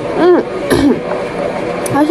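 Short spoken Korean question, "맘에 들어?" ("Do you like it?"), in two brief voiced bursts in the first second, over steady background music.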